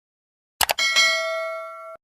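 Subscribe-button sound effect: a quick double mouse click, then a bell dings, struck again a moment later, and rings down until it is cut off abruptly just before the end.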